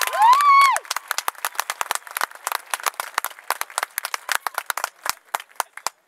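Audience applauding in the stands, opening with one loud rising cheer from a single spectator. The clapping is dense at first and thins to scattered claps near the end.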